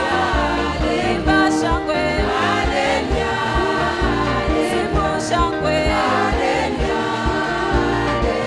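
Gospel choir singing a praise song with band accompaniment over a steady bass beat.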